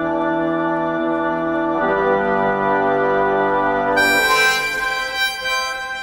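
Pump organ holding sustained reedy chords. About four seconds in, a brighter, higher reed melody enters over them and moves from note to note.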